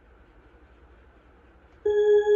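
Near silence (faint room tone) in the gap between pieces, then about 1.8 s in an electronic organ starts a single steady held note.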